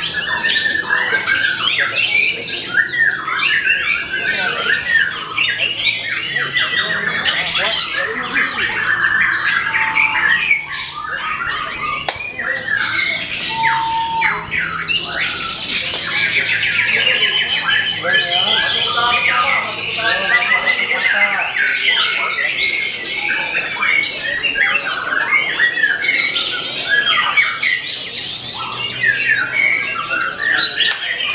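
Many caged songbirds singing at once: a dense, unbroken chorus of fast chirps, trills and squawks.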